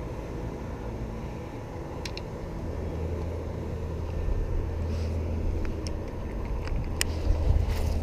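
A low, steady motor hum that starts about two and a half seconds in and grows slowly louder, with a few faint clicks over it.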